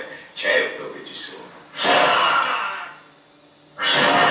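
Soundtrack of a projected film trailer heard through the room's speakers: a man's voice, then two loud, noisy bursts about a second long each, the second as the title comes up.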